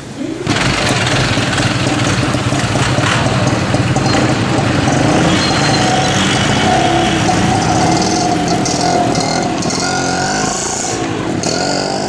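Street traffic close by: a motorcycle engine running among passing cars and vans, starting abruptly about half a second in, with an engine revving up near the end.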